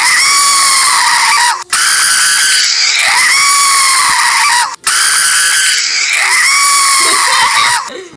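Very loud, shrill recorded scream sound effect from a screamer jump scare, playing on a loop and restarting about every three seconds.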